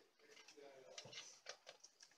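Near silence, with a few faint short ticks.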